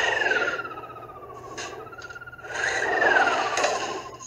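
Moo can toy tipped twice, each time giving a falling, wavering 'moo'; the second starts about two and a half seconds in.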